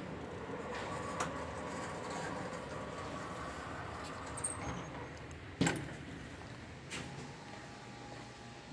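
Hydraulic elevator's pump motor running as the car is sent upward: a steady hum with a faint whine that eases off in the second half. Two sharp knocks sound partway through.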